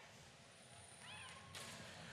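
Near silence on the broadcast feed, with a faint short squeak about a second in and a faint hiss in the last half second.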